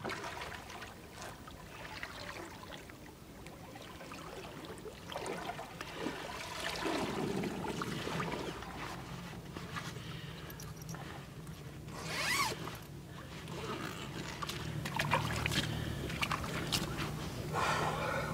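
Zip on a carp retention sling being pulled along in several rasping strokes, the loudest a little past the middle, with water sloshing as the sling is handled in shallow water.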